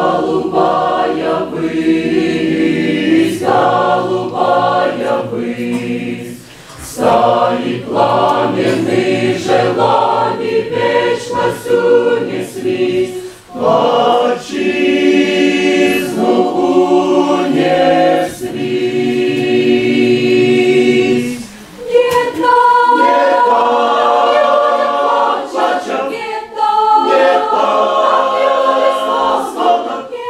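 Mixed church choir of men's and women's voices singing a hymn in parts, with short breaks between phrases.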